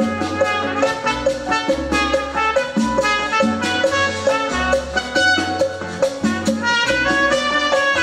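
Live Latin band playing an instrumental passage with trumpets, keyboard, guitar and drums over a bass line that changes note every half second or so, in a steady dance rhythm.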